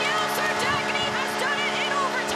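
Arena goal horn blaring with a steady chord, over a crowd cheering and shrieking: the signal of a goal just scored, here the overtime winner.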